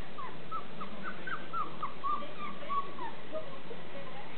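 Berger Picard puppies yipping as they play-fight: a quick run of about a dozen short, high squeaks, each falling in pitch, about four a second for some three seconds.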